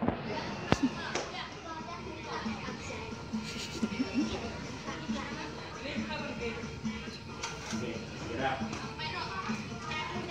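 Indistinct background voices with music playing underneath, and two sharp clicks within the first second.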